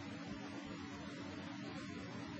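Faint steady electrical hum with a single held tone under a low hiss, with no speech.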